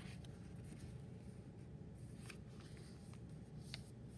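A square of white paper being folded by hand and its crease pressed flat against a countertop: faint rustling and sliding, with a few small ticks in the second half.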